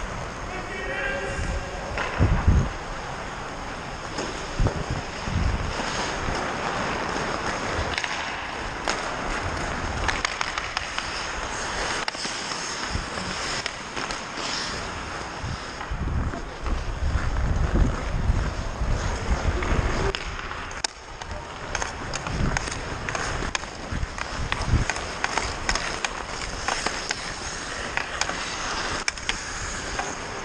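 Ice skate blades scraping and carving on rink ice under a skating player, with short low rumbles of wind on the microphone and scattered sharp clacks of hockey sticks and puck.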